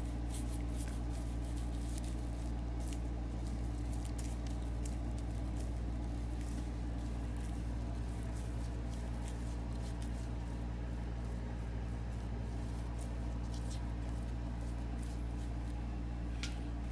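A glue brush stroking and dabbing fish-bladder and sinew glue onto the wooden back of an Osage orange bow, sizing it before sinew is laid: a scatter of faint, wet little clicks and ticks. Under it runs a steady low hum.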